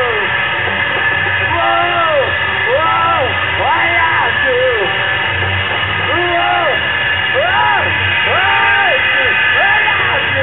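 Loud live garage-rock concert: a voice yells a short rising-and-falling cry over and over, about once a second, over the band's drums and a dense wash of amplified noise.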